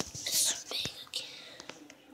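A girl whispering briefly and breathily close to the microphone, followed by a few light clicks.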